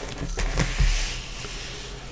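A sheet of writing material being slid across a desk: a sliding, rubbing hiss lasting about a second and a half, with a low rumble and a couple of light knocks in the middle.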